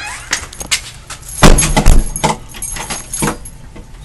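Rattling clicks and knocks, with two loud thumps about one and a half and two seconds in.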